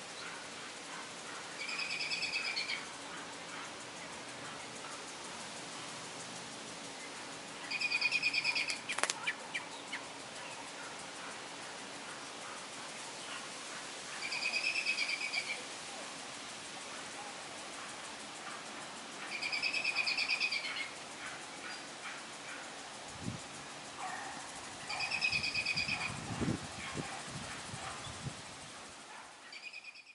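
A bird calling: a short trilled call of about a second, repeated five times at intervals of about six seconds, over a steady outdoor hiss. A sharp click comes about nine seconds in, and a few low knocks near the end.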